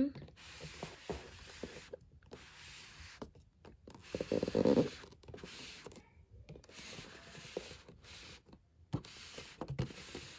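Faint handling noise, light rubbing and small clicks from a handheld phone camera, with one brief, louder low sound about four and a half seconds in.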